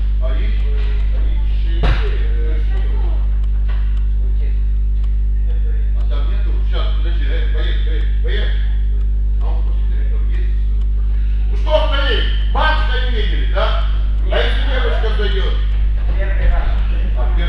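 Indistinct voices of several people talking in a gym hall over a loud, steady low hum. A single sharp knock comes about two seconds in, and the talk grows busier near the end.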